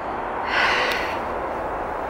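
A person's breathy exhale, like a sigh, about half a second in, over a steady rushing noise.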